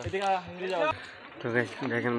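Men's voices talking at close range; only speech, no other distinct sound stands out.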